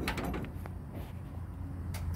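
Semi-trailer landing-gear crank being wound by hand, giving a few faint mechanical clicks over a steady low rumble.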